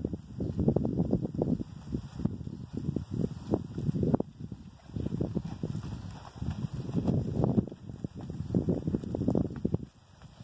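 Gusty wind buffeting the microphone, with the uneven thuds of a pony's hooves trotting on soft arena dirt as it comes closer.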